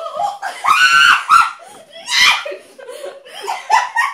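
People laughing loudly and shrieking in a few high-pitched bursts, the loudest about a second in and just after two seconds.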